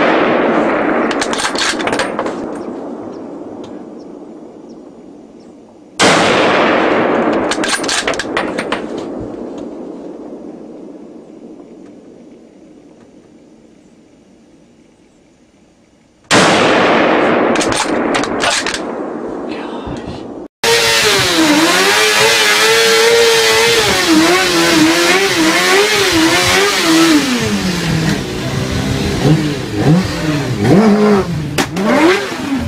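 Two gunshots about ten seconds apart, each sharp crack followed by a long echoing decay and a few fainter echoes. About 20 seconds in, a motorcycle engine starts revving hard and unevenly in a burnout, its pitch rising and falling.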